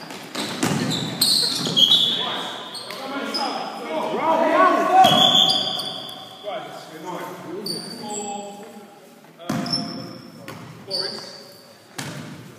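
Indoor basketball play: the ball bouncing on the court and sneakers squeaking on the hall floor, with players shouting, all echoing in a large hall.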